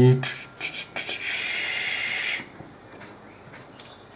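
Black marker drawing on paper: a few short scratches, then one longer, squeaky stroke lasting just over a second.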